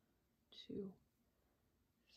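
A woman softly says a single word, "two", about half a second in; otherwise near silence.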